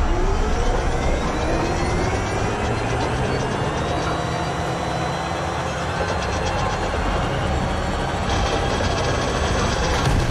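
Action-film soundtrack of a desert vehicle chase: dense, steady engine and machinery noise, with several slowly rising whines in the first few seconds.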